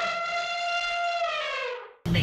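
Title-card sound effect: a single held synthetic tone, rich in overtones, rising slightly in pitch, then gliding down and fading out near the end.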